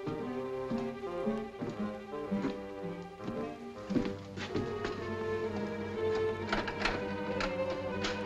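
Background film-score music, a line of shifting sustained notes, with a few sharp knocks in the second half.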